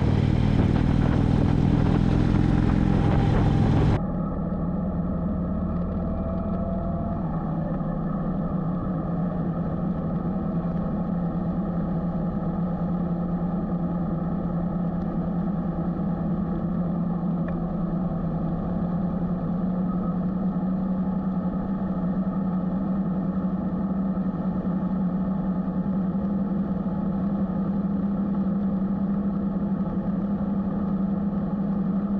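Motorcycle engine running steadily at cruising speed, with wind and road noise. About four seconds in the sound changes abruptly, becoming quieter and duller, and then carries on as an even engine hum that rises slightly in pitch later on.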